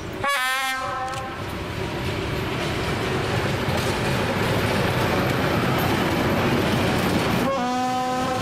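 Class 752 diesel locomotive, with its ČKD six-cylinder engine, passing close by at the head of a freight train. It gives a horn blast about a quarter second in that lasts about a second, and sounds the horn again near the end. Between the blasts the engine and the rumble of the wagons' wheels on the rails grow louder as the train goes past.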